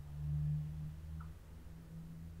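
A low, steady hum that swells for about a second near the start, then settles back to a faint drone.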